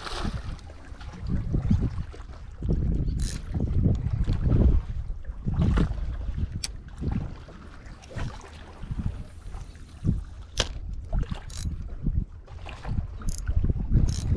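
Wind buffeting the microphone in uneven gusts over sea water washing against the jetty rocks, with a few sharp clicks scattered through.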